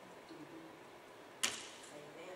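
A single sharp click or tap about one and a half seconds in, over quiet room tone with a faint murmur of a voice.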